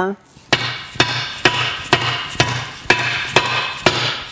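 A mallet striking a seal driver tool about eight times, roughly two blows a second, driving the suction piece seal into a Berkeley jet drive's suction piece until it seats. Each blow leaves a ringing tone between strikes.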